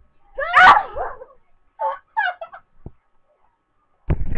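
High-pitched squeals from a girl, with the pitch sliding up and down: a loud one about half a second in and a few shorter ones around two seconds in, then a soft knock.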